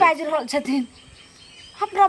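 Conversational speech: a voice talking for nearly the first second, a short pause, then talking again near the end.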